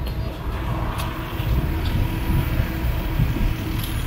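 Wind rumbling on the microphone outdoors: an uneven low rumble.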